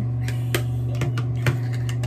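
A steady low hum that goes on and on and cannot be turned off, with three light clicks from makeup being handled about a half-second apart near the middle.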